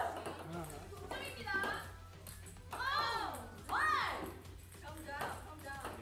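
Several young women's voices exclaiming and chattering, with two drawn-out calls that rise and fall in pitch about three and four seconds in.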